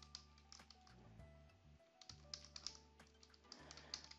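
Faint computer keyboard typing: a run of quick keystrokes, busiest in the second half.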